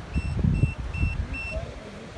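Wind buffeting the microphone in irregular low gusts, over a regular run of short, same-pitched electronic beeps, about two or three a second, typical of an F3F contest timing system.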